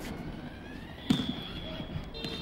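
A single sharp bang or knock about halfway through, followed by a steady high-pitched tone.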